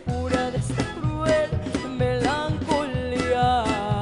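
Live mariachi music: a woman singing over strummed vihuela and guitar with a guitarrón bass line, in a steady dance rhythm.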